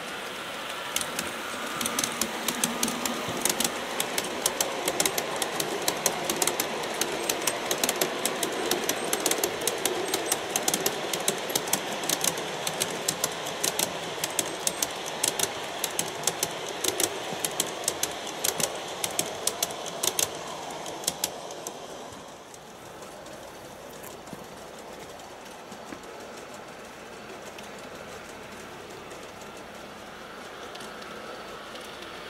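LGB G-scale model train rolling past: a steady running rumble with a quick, uneven run of sharp clicks as the wheels cross rail joints. The clicks stop about 21 seconds in and the sound drops to a quieter steady noise.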